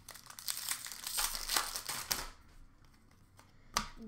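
A foil trading-card pack wrapper torn open and crinkled for about two seconds, then quieter handling of the cards and a single sharp click near the end.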